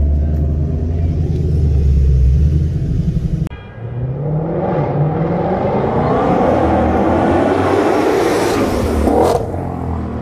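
Ford Shelby GT500's supercharged V8 idling with a deep, steady hum, heard inside the cabin. After a sudden cut, the car accelerates hard down the street, its engine note climbing in pitch for several seconds before easing off near the end.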